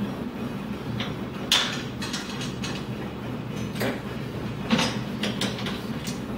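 Sharp metallic clicks and knocks from hand tools and metal mounting hardware being handled on an aluminium rail, the loudest about a second and a half in and near five seconds, with a few quick clicks near the end. A steady low hum runs underneath.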